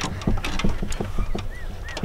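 Clicks and rattles of a dog harness and camera mount being handled and fastened on a beagle. Near the end come a couple of short, high whimpers from the dog, about three a second.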